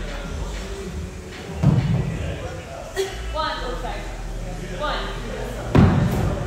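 Two heavy thuds on a rubber gym floor, a little under two seconds in and again near the end, from dumbbells and a body landing during dumbbell devil presses. Background voices and music run underneath.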